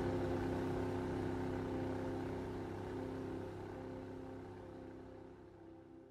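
Outboard engine of a rigid inflatable boat running at speed, a steady hum over the rush of the hull and wake, fading out gradually towards the end.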